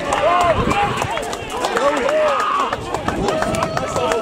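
A few men shouting and cheering together as a goal goes in, with loud overlapping calls that rise and fall.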